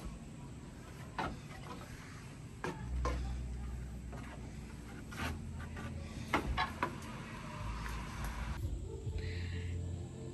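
Handling noise from a hand-held camera being moved around: scattered light knocks and clicks, with a low rumble from about three seconds in.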